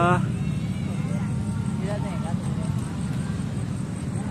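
Steady low engine hum of road traffic, with faint voices of people around. A rising voice cuts off right at the start.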